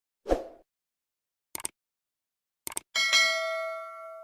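Subscribe-button animation sound effect: a soft pop, two short clicks, then a bell ding about three seconds in that rings on and fades.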